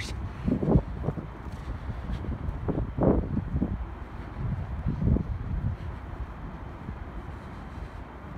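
Wind buffeting a phone's microphone: a low, rough rumble with irregular stronger gusts, the strongest about three seconds in.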